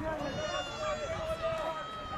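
A long, drawn-out shout from a voice on a football pitch, held at a nearly steady pitch for about two seconds.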